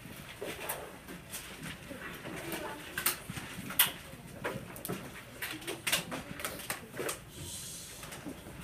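Classroom desk noise as students get out paper and pencils: irregular sharp knocks and clicks from desks, binders and pencils, with paper handling and a faint murmur of children's voices.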